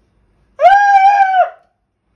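A person's high-pitched vocal cry: one held, nearly level note of just under a second, starting about half a second in.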